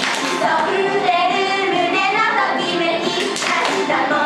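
Girls' idol group singing together into microphones over pop music.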